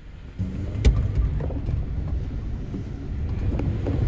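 A car rolling downhill with steady low road and engine rumble, and a sharp knock about a second in.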